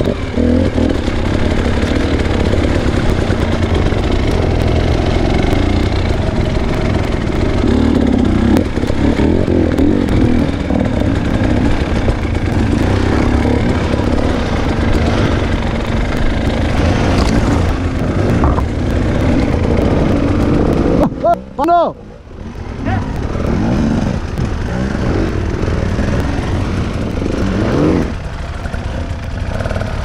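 Enduro dirt bike engine running as it is ridden slowly over a muddy, rutted forest trail, the throttle opening and closing. About two-thirds of the way through the engine drops away for a moment, gives one quick rev that rises and falls sharply, then pulls again.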